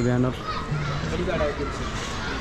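A man speaking briefly at the start, then a short phrase from another voice and faint, distant voices of people and children.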